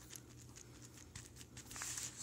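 Faint small ticks and rustling of fingertips pressing and smoothing a plastic screen protector film onto a phone's screen, with a brief louder rustle of the film near the end.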